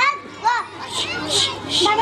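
Young children's voices on a stage microphone: a brief pitched phrase about half a second in, then three short hisses about one to two seconds in.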